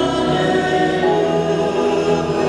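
Church choir singing a hymn in long held notes, the chord shifting about half a second and one second in.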